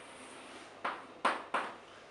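Chalk striking a chalkboard: three sharp taps in quick succession, starting a little under a second in.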